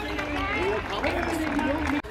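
People talking nearby, with a steady low rumble underneath.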